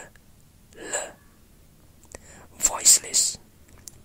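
A voice whispering separate English speech sounds in Received Pronunciation: one short whispered sound about a second in, then a longer, louder one with sharp onsets around three seconds in.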